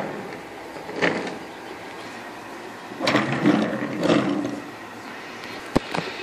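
Handling noise from wooden toy trains on a wooden track, moved by hand: scattered scuffs and rustles, then a single sharp click near the end.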